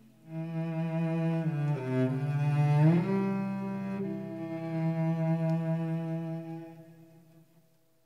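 Cello playing sustained bowed notes with a nay (end-blown flute) alongside; the melody slides upward about three seconds in, then the held notes fade away near the end.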